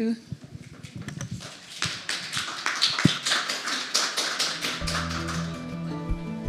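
Small audience applauding with scattered claps that thicken into steady clapping. Soft music fades in near the end.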